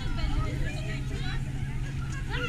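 People's voices talking in the background over a steady low hum.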